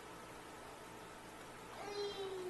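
Quiet room tone, with a short high-pitched cry starting near the end and falling slightly in pitch.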